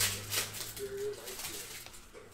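A trading card in a rigid plastic holder being handled, two short rustles or scrapes about half a second apart, with a low hum underneath and a few brief voice sounds.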